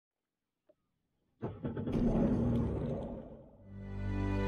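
Sea-Doo Fish Pro personal watercraft under way, its engine running hard. The sound cuts in suddenly about a second and a half in and fades out near the end as music comes in.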